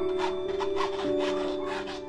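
Pencil scratching on a stretched canvas in a rapid run of short sketching strokes, over background music with held notes.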